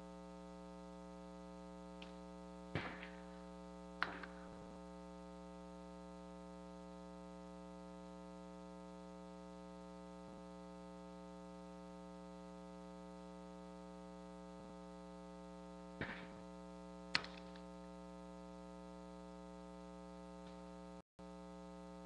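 Faint, steady electrical mains hum in the audio feed, with a few short sharp clicks: one pair a few seconds in and another pair later, each pair about a second apart.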